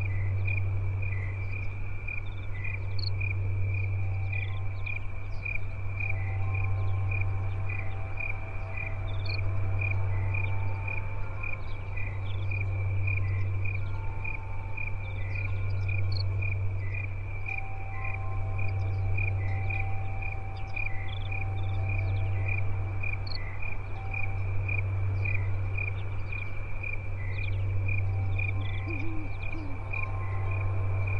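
Crickets chirping steadily in a high, evenly pulsed trill over a low droning hum that swells and fades about every three seconds. Scattered faint higher chirps come and go.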